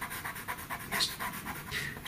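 Black pastel pencil stroking on textured paper: a few faint, quick scratching strokes, the clearest about a second in.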